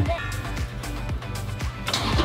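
Background music with sustained tones.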